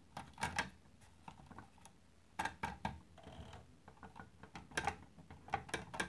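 Light clicks and taps of the model's aluminium-and-brass ladder being handled and seated back into place on the metal fire engine, coming in a few small clusters with a brief scrape in the middle.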